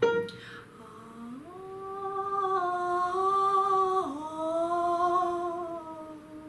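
A piano note is struck at the start, then a woman hums a short phrase: a low note, a step up to a long held note that swells louder, then down a second to a held note that fades. This is a demonstration of an 'energetic crescendo' sung toward the descending second.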